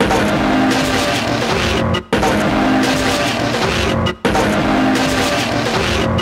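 Live experimental electronic music: a dense, noisy loop about two seconds long. It cuts out abruptly and restarts at the start, about two seconds in and about four seconds in.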